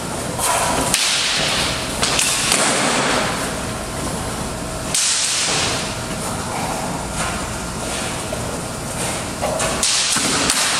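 Movement noise from longsword drilling in armour: rustling and shuffling that swells in bursts every few seconds, with a few sharp knocks or clicks.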